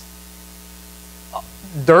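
Steady electrical mains hum in a pause between words, with a man's voice starting to speak near the end.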